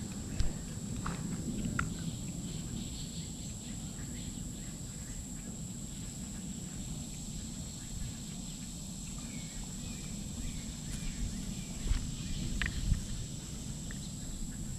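Outdoor summer ambience: a steady high-pitched insect drone over a low rumble, with a few short knocks near the start and again near the end.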